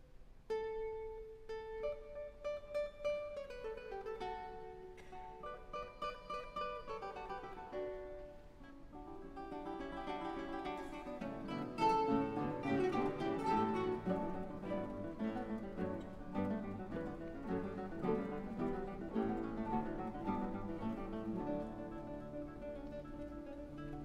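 An ensemble of classical guitars playing, starting about half a second in with a few plucked notes and building into a fuller, louder texture of many guitars together about halfway through.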